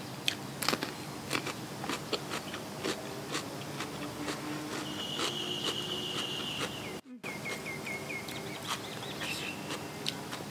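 Crisp crunching of bites into a raw cucumber, many sharp crunches in the first few seconds, then chewing. A high, steady trill sounds in the background near the middle, followed after a short cut by a run of short high chirps.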